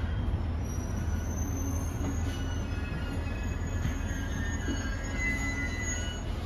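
Cabin sound of a JR East GV-E400 series diesel-electric railcar running: a steady low rumble with faint, thin high-pitched squealing from the running gear.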